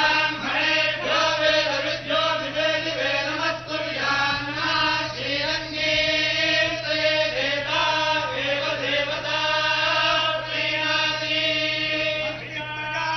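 A group of Hindu priests chanting mantras together in a continuous, unbroken recitation.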